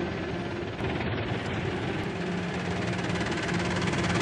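Horror trailer score sound design: a dense, noisy drone with a rapid fluttering pulse over low held tones, slowly swelling in loudness.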